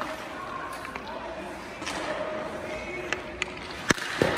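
Ice hockey stick striking a puck in a shot, a single sharp crack just before the end. There is a softer knock about two seconds in, over faint voices in the rink.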